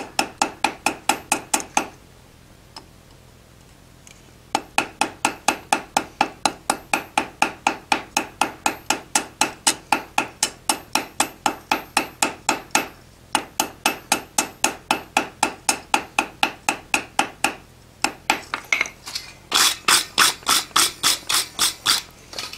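Rapid, light hammer blows on a steel anvil, about five a second with a ringing tone, rounding up a small hot iron bar into quarter-inch rivet stock; the blows come in runs broken by short pauses. In the last couple of seconds, harsher scrubbing strokes of a wire brush on the bar.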